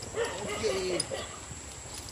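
Indistinct voices of people talking at a distance, with no clear words.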